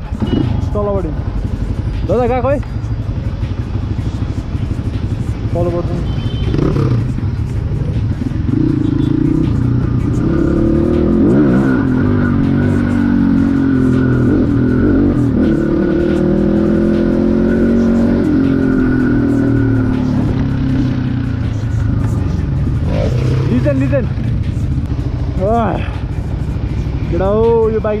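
Motorcycle engine running as the bike is ridden, its pitch rising and falling as the rider revs through the gears, loudest over the middle stretch, with a low wind rumble on the microphone. Voices come in briefly near the start and again near the end.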